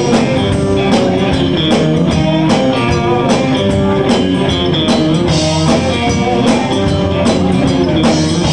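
Live country band playing an instrumental passage: electric guitars over a drum kit keeping a steady beat.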